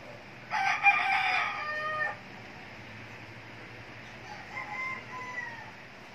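A rooster crowing: one loud crow of about a second and a half early on, then a fainter second crow about four seconds in.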